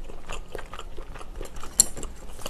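Close-miked eating sounds: soft chewing with small, irregular clicks and taps of chopsticks and tableware, and one sharper click near the end.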